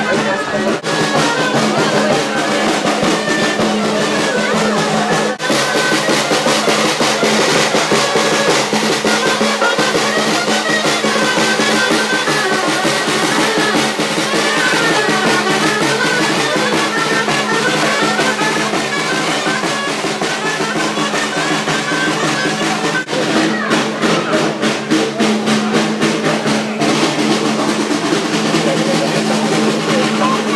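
Street band of clarinets and snare drum playing a tune, the snare keeping a dense, steady roll under the clarinet melody.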